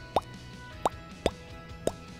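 Four short, upward-sliding cartoon 'bloop' sound effects, about half a second apart, over faint background music.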